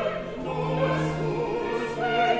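Mixed chorus of men's and women's voices singing a baroque opera chorus, with orchestral accompaniment.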